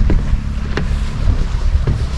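Wind buffeting the microphone in a loud, uneven low rumble, with a few soft footfalls on the wooden boardwalk, roughly one every second.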